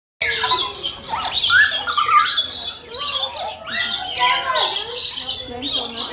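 Lorikeets screeching and chattering continuously in shrill, overlapping calls, with people's voices mixed in.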